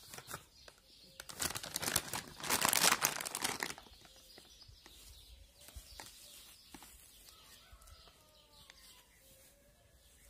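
Crinkling and rustling of a plastic wet-wipes pack as a wipe is pulled out, loud for a couple of seconds, then quieter handling and rubbing of the cloth vacuum filter.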